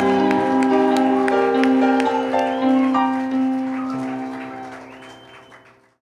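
Live music of held chords with audience applause over it, the clapping thinning out; everything fades away to silence near the end.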